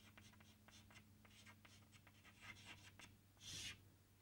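Faint chalk writing on a blackboard: a run of light taps and scratches as words are chalked up.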